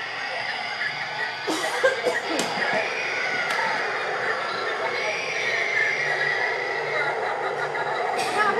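Eerie, wavering voice-like wailing from animatronic Halloween props, over the steady background noise of a busy shop, with a few sharp clicks in the first seconds.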